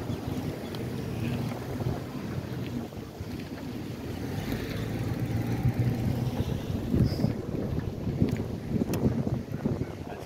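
Wind buffeting the microphone of a camera riding on a moving bicycle, a steady low rumble, with a few sharp knocks in the last few seconds.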